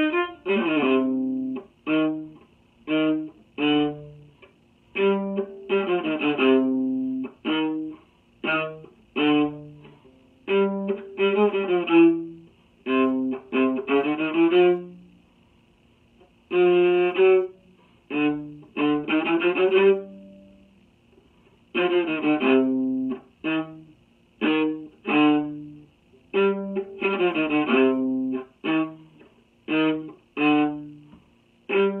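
Solo viola, bowed, playing the second part of a tango duet: short, detached notes and phrases in a rhythmic pattern, broken by brief rests, with a longer pause about halfway through and another a few seconds later.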